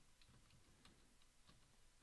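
Near silence with a handful of faint keyboard keystroke ticks as a word is typed.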